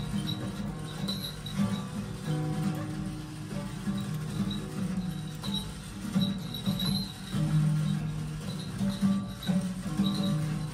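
Music playing, with guitar.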